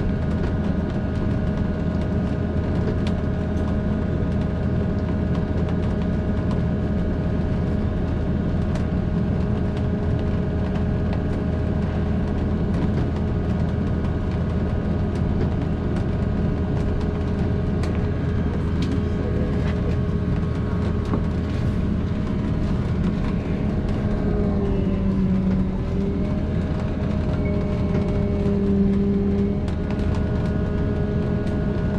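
Cabin of a large passenger vehicle moving slowly through floodwater: a steady drivetrain hum with several steady whining tones over a noisy wash. Near the end the mid-pitched tones shift briefly in pitch twice.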